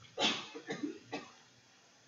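A man coughing: one loud cough, then a few smaller ones.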